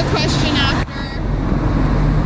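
Street traffic: cars driving past with a low, steady engine hum. A voice is heard briefly at the start and cuts off suddenly a little under a second in.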